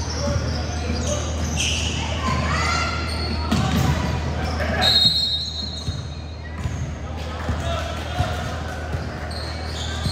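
A basketball bouncing on a hardwood gym floor, with players' voices calling out and echoing in the large hall. A brief high squeak comes about five seconds in.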